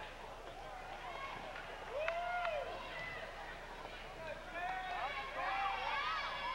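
Spectators' voices in a school gymnasium, mixed chatter, with one voice calling out loudly about two seconds in and more voices near the end.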